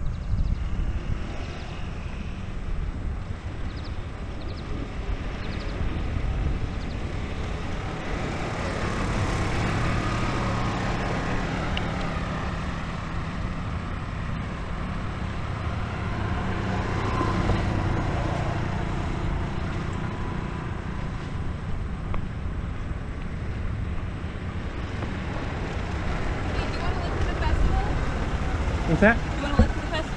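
Outdoor roadside ambience: a steady low rumble with a vehicle engine hum that swells and fades in the middle.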